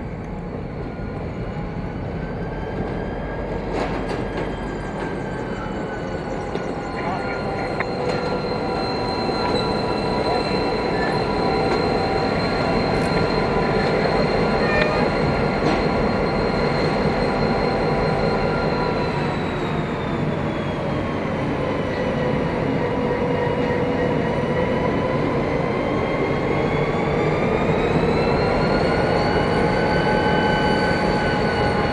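81 class diesel-electric locomotive's EMD V16 two-stroke engine running close by, growing louder over the first half. Its pitched engine note dips about two-thirds of the way through and rises again near the end.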